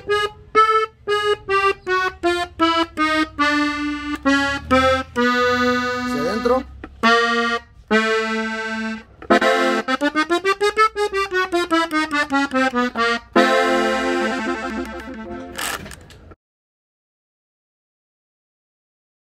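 Gabbanelli button accordion in F playing a melodic ornament solo: short separate notes, then a quick run that climbs and falls back, ending on a held chord. The playing breaks off sharply near the end.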